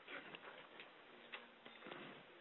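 Near silence: room tone with a few faint clicks of a computer mouse, about half a second apart.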